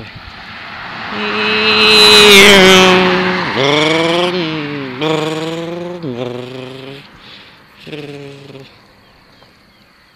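A truck passes close by: its tyre and engine noise swells to its loudest about two and a half seconds in, then fades. Then a boy imitates car engine noises with his voice, four drawn-out "vroom" sounds, the last just before the end.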